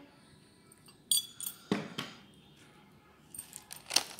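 Small clinks and knocks of a glass spice jar being handled while spice is added to the flour: a few sharp clicks about a second in, then a cluster of small clinks near the end.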